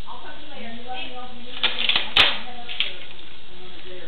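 Steady hiss with a faint, indistinct voice in the first half, and a few sharp clicks, the loudest just after two seconds in.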